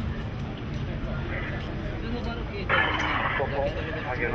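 Indistinct voices over a steady low rumble of street and vehicle noise. A short harsh burst of noise comes about three-quarters of the way in.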